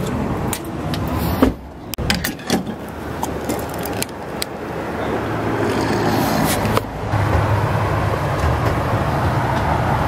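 A few clicks and knocks in the first few seconds as the pickup's fuel door and cap are handled at a gas pump. Then a steady rush of vehicle and gas-station noise that slowly grows louder.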